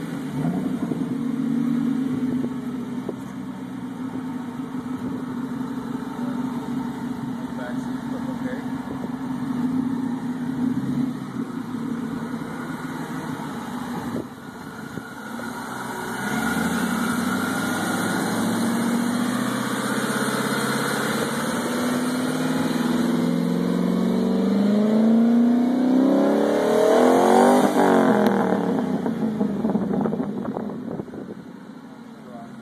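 Ford Mustang's engine idling steadily, then revved: from about halfway it grows louder, and its pitch climbs gradually to a peak near the end before dropping back.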